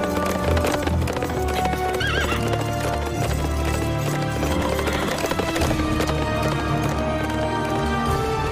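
Horses' hoofbeats at a gallop, a cartoon sound effect over orchestral score, with a short horse whinny about two seconds in.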